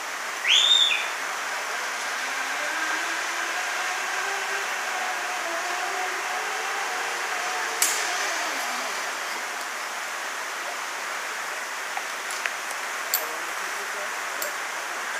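A zip-line trolley's pulley whirring along the cable as a rider comes in, its pitch rising and then falling as he slows, with a sharp click as he reaches the platform near the middle. A loud, short rising whistle comes about half a second in, over a steady hiss of rainforest background.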